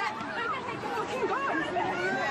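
A crowd of people's voices talking and calling out over one another, several raised voices overlapping with no single clear speaker.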